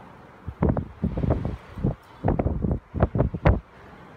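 Strong, gusty wind buffeting the microphone in irregular low gusts, starting about half a second in.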